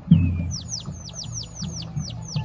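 A bird singing a quick run of about nine sharply falling high chirps, several a second, beginning about half a second in. A low thump comes just before them, right at the start.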